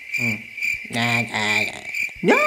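Crickets chirping, a repeated high chirp used as the comedy 'crickets' sound effect for an awkward silence, with a low voice making short sounds beneath it.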